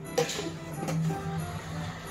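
Background music: a soft plucked-string instrumental, single notes starting one after another.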